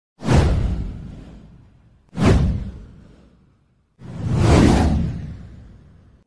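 Three whoosh sound effects for an animated title card. The first two start suddenly and fade away over a second or two; the third, about four seconds in, swells up more gradually before fading.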